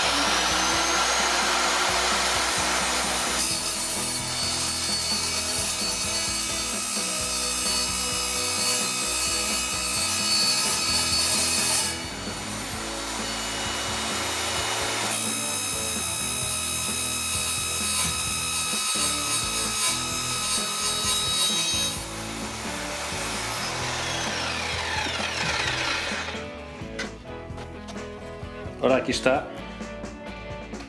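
Evolution R210 MTS multi-material mitre saw (1200 W motor, 210 mm blade) spinning up with a rising whine, then cutting through a wooden block with steel screws in it in two long passes, with a lighter stretch between them. The blade labours as it meets the screws but still cuts through. The motor winds down with a falling whine near the end.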